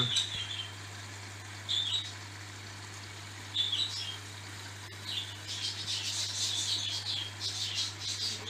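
Small cage birds chirping: a few short chirps in the first half, then chirping almost without a break near the end. Under it runs a steady low hum from the aquarium air pumps.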